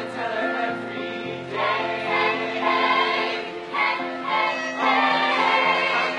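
A mixed choir of men's and women's voices singing together, holding long notes.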